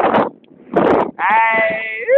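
A bleating animal: one long drawn call starting a little past a second in, its pitch sliding slightly down. Two short bursts of noise come before it.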